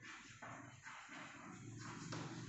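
Chalk writing on a blackboard: a few faint scratching strokes as a word is written.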